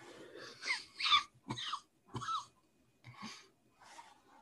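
A person coughing and wheezing in a series of short bursts, the loudest about a second in.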